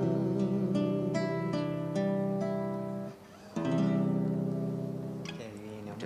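Nylon-string classical guitar playing the closing bars of a song: picked notes and chords, a short break about three seconds in, then a final chord left ringing and fading out.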